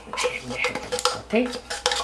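A spoon clinking and scraping against the inside of a metal tin of sweetened condensed milk, several sharp knocks as the last of the milk is scraped out.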